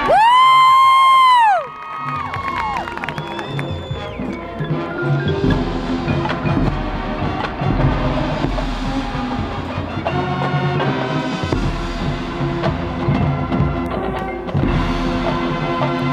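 High school marching band playing: a loud held brass chord cuts off after about a second and a half, then the band carries on more softly with sustained chords and light front-ensemble percussion.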